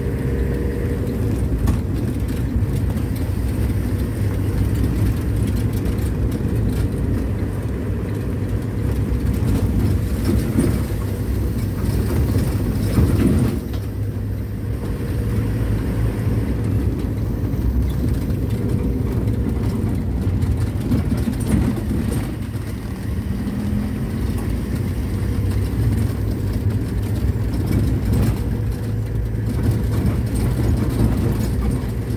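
Toyota ambulance driving on an unpaved dirt road, heard from inside the cab: a steady low rumble of engine and tyre noise that eases briefly about halfway through.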